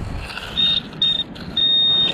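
Garrett AT pinpointer beeping as its tip is worked through the sand over a target: two short high beeps, then a longer steady tone near the end as it closes in on the metal.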